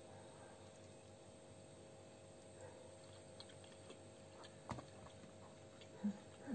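Near silence with faint chewing of an eggplant roll with walnut filling: scattered small mouth clicks over a steady low room hum, with one sharper click a little before five seconds in.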